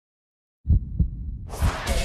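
Trailer sound-effect hits: after silence, two short deep thumps about a third of a second apart, then a hissing rush over further low thumps starting near the end.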